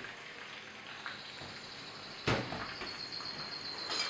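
Hot vegetable broth poured into a frying pan of garlic in hot oil, sizzling, with a single sharp knock a little over two seconds in.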